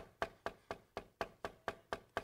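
Rapid, evenly spaced knocking on a hard surface, about four knocks a second, like someone knocking at a door.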